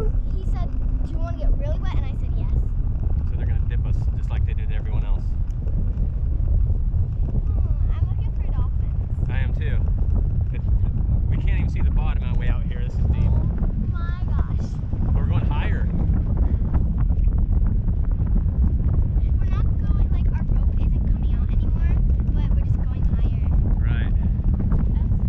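Wind rushing over the microphone of a camera in flight under a parasail: a steady low rumble at an even level throughout.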